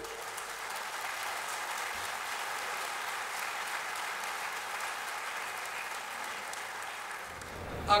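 A large audience applauding steadily, with even clapping from many hands that holds through the pause in the speech.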